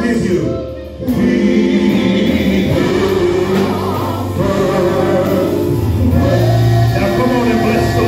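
Live gospel worship music: voices singing through microphones over a band with a drum kit and sustained bass notes. The sound dips briefly just before a second in, then carries on.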